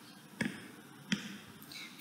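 Two faint, sharp clicks less than a second apart over quiet room tone, made while the document is being highlighted on screen.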